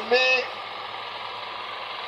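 A steady low hum, heard after one short spoken word at the start.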